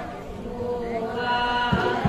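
Assamese Borgeet in Raag Mallar: a group of voices holding a long chanted note over the steady drone of a harmonium, between drum phrases. One low khol drum stroke comes near the end.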